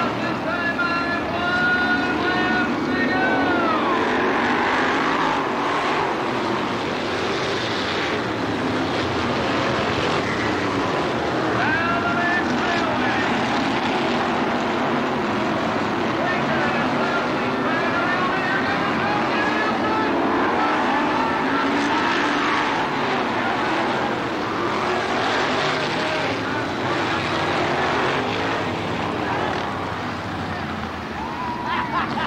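A field of dirt-track modified race cars running at racing speed, their V8 engines revving up and down in rising and falling whines as they come past, with a steady roar throughout.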